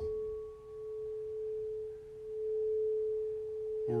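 Singing bowl sung by circling a wooden mallet around its rim. It gives one steady, pure ringing tone whose loudness slowly swells and dips, while a fainter higher overtone fades out in the first second and a half.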